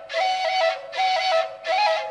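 Solo flute playing a melody that steps between a few notes, in short phrases broken by brief pauses.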